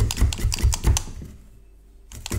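Felting needle stabbing repeatedly through wool into a bristle brush felting mat, a rapid run of soft taps about six a second that stops a little over a second in.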